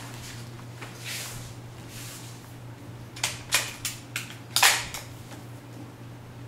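Bolt of an airsoft VSR-11 series bolt-action rifle being worked, a run of sharp metallic clicks with the loudest about four and a half seconds in, as it is cocked against a stiff upgrade spring.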